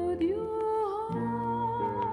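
A female voice singing a long held note that steps up in pitch just after the start and then wavers with vibrato, over instrumental accompaniment that changes chord about a second in.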